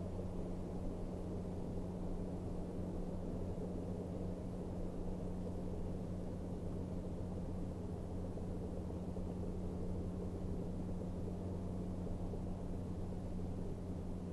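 A steady low hum with a band of hiss under it, unchanging throughout, with no distinct events.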